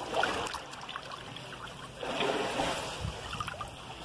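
Swimming-pool water sloshing and lapping close to the microphone as a person moves through it, with a louder surge about two seconds in.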